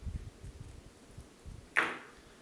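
Faint low knocks of hands and tools handling materials, then near the end a single short, crisp snip: scissors cutting a length of poly yarn.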